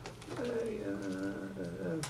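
A person's voice holding a long, low, drawn-out hesitation sound between two sentences, a held hum or 'uhh' that starts a moment in and runs on without breaking into words.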